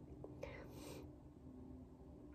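A woman's short, breathy breath about half a second in, faint over a steady low hum in an otherwise quiet room.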